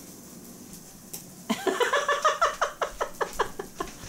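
A person laughing hard: a run of quick, pitched "ha" pulses, about five a second, starting about a second and a half in.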